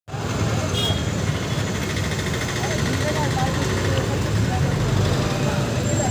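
Steady low rumble of vehicle engines, with faint voices in the background.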